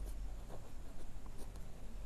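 Pen writing on paper: faint scratching strokes as handwriting is put down.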